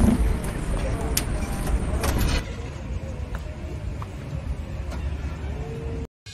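Low outdoor background rumble, heavier for the first two seconds or so and then quieter, with a few light clicks and knocks.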